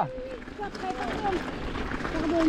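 Mountain bike tyres rolling over a gravel track, a steady noise with small crackles, under faint voices of other riders.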